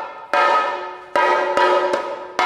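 Chenda, the Kerala cylindrical drum, struck with a curved stick in slow single strokes, about three or four in two seconds, each sharp stroke ringing on and fading before the next.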